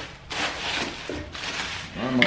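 Clear plastic wrap crinkling and rustling in several short spells as it is handled and pulled off an engine block.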